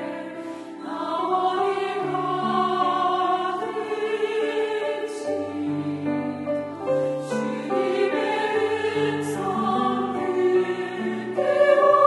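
Mixed church choir singing a Korean hymn in harmony, with sustained chords, swelling louder near the end.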